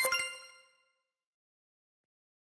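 Short bright chime of an animated logo's sound mark: several ringing tones struck together that fade out within about a second.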